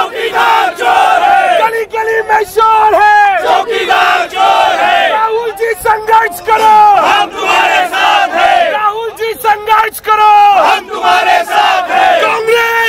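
Crowd of men loudly shouting protest slogans together, one shouted phrase after another without pause.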